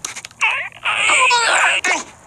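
The cartoon sabre-toothed squirrel Scrat whimpering and squealing in a high, wavering voice. A few short clicks come just before his cry.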